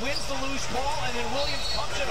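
NBA television broadcast audio: a play-by-play commentator's voice over arena crowd noise, with a basketball being dribbled on the court.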